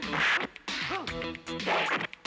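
Film score music under a brawl, with a loud noisy hit right at the start and a short cartoonish sound effect that slides up and down in pitch about a second in.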